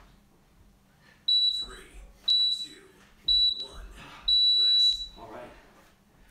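Interval timer beeping the end of a work interval: three short high beeps a second apart, then one longer beep about four seconds in.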